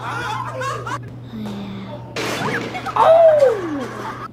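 Fail-video soundtrack: a sudden loud noise about two seconds in, then one long falling cry from a voice, over music and laughter.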